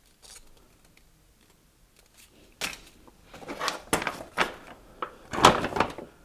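Handling of MRE packaging: quiet for the first couple of seconds, then a run of sharp crinkles and rustles of paper and plastic as the emptied accessory pouch is pulled open.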